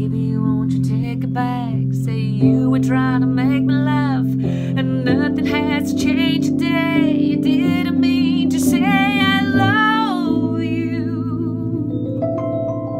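A woman singing a slow ballad, her voice wavering on long held notes, over sustained piano chords. The singing stops about ten and a half seconds in and the piano plays on alone.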